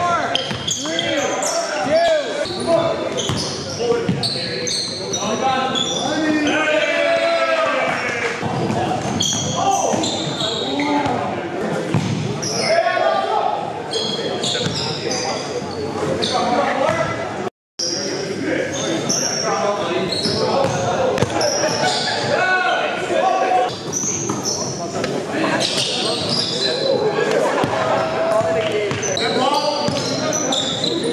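Live basketball game in a gym: the ball bouncing on the hardwood floor amid players' voices calling out, echoing in the large hall. The sound cuts out for a split second a little past the middle.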